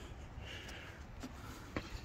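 Quiet pause: low steady background hum with a faint brief rustle and two soft clicks, the sound of a phone being handled and moved.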